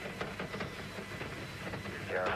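Rumble and crackle of a Saturn V's first-stage F-1 engines in flight, heard from a distance through an old broadcast recording.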